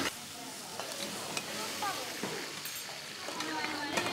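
Pork pieces sizzling as they are stir-fried in a pan, with a few light clicks of a utensil stirring against the pan; the meat is browning.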